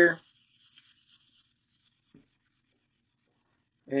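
Red abrasive stripping pad with a little oil rubbed quickly back and forth on a steel rifle bolt, scrubbing off surface rust and crud: a short run of faint, even strokes over the first second and a half, then a single light tap.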